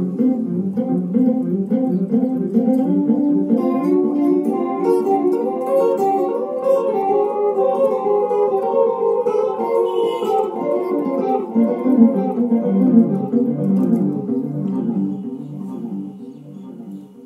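Solo guitar playing a meditative jazz-blues improvisation of plucked notes. The playing dies away near the end.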